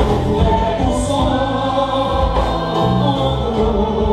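Live gospel worship song: a woman sings lead through a microphone and PA over amplified band accompaniment with held bass notes, other voices singing along.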